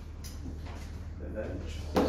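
Faint, quiet voices of people in a room over a steady low hum, with a sharp click near the end.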